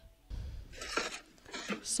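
Faint film soundtrack in a quiet moment: soft rustling and light knocks with a brief low rumble near the start, and no clear dialogue.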